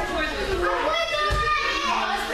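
Many children's voices talking and calling over one another, echoing in a large gym hall, with a low thump about two-thirds of the way through.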